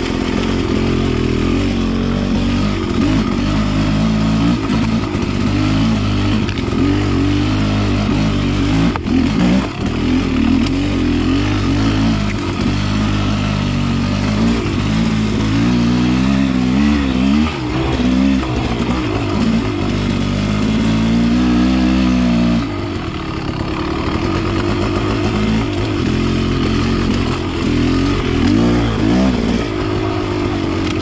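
Beta Xtrainer two-stroke dirt bike engine pulling along a trail, its note rising and falling as the throttle is worked on and off. It drops back briefly about three quarters of the way through, then picks up again.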